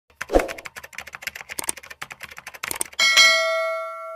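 Typewriter sound effect: a quick run of key clicks for about three seconds, then a single bell ding near the end that rings on and fades.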